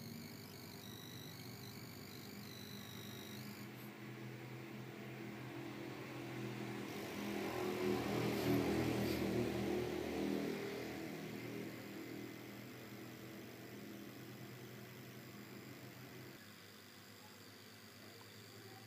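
A steady mechanical hum that slowly swells, is loudest about halfway through, and then fades away again.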